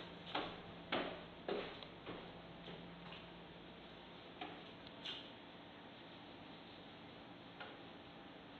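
A run of sharp knocks about every half second that grow fainter over the first three seconds, then a few scattered faint clicks, over a low steady room hum.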